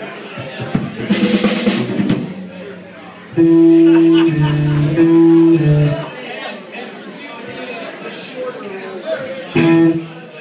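Electric guitars through a band amp, played loosely: a few loud chords held about a second each, the loudest run from about three and a half seconds in, and another just before the end. A brief burst of cymbal and drums about a second in, with voices chattering underneath.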